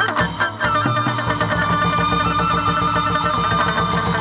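Instrumental chầu văn ritual music: a plucked lute plays quick repeated notes, and about a second in a long high melody note is held over it.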